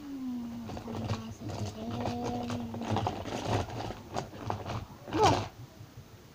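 A child humming one long steady note while plastic crinkles and clicks as a toy is taken out of a surprise egg, with a short loud exclamation about five seconds in.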